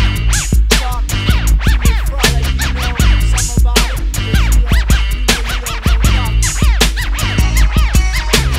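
Hip hop track with turntable scratching: short back-and-forth record scratches over a steady drum beat and deep bass line, with no rapping.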